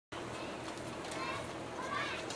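Faint background voices with no clear words over a steady outdoor hiss.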